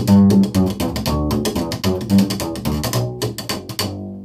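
Upright bass played slap style: a quick run of plucked low notes mixed with sharp clicks of the strings slapping back against the fingerboard, several per second. The playing stops abruptly just before the end, leaving one low note ringing.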